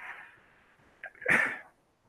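A man's short breathy laugh: a faint huff of breath at the start, then one louder burst about a second in.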